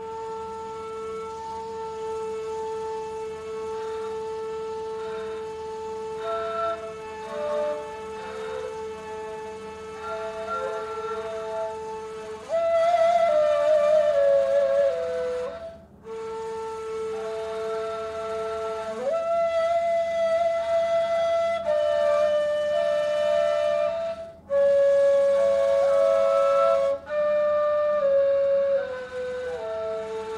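Ney, the Turkish end-blown reed flute, playing long held notes in a tone exercise from Rast up to Neva. It holds the low Rast note for a long stretch, then climbs to notes about a fifth higher and steps back down to the starting note near the end. At times two notes sound together.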